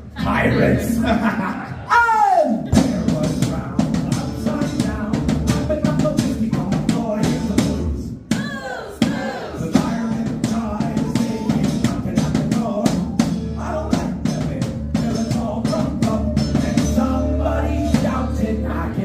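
A live Celtic rock band playing: a drum kit beat under acoustic guitar and whistle. Two falling pitch glides cut through, about two seconds in and again about eight seconds in.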